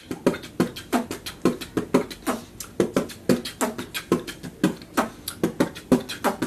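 A person beatboxing into a handheld microphone: a quick, steady rhythm of percussive mouth sounds.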